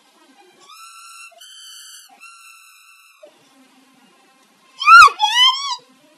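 High-pitched whistle-like tones: three steady held notes, then, about five seconds in, a much louder squeal that opens with a sharp click and rises and falls twice.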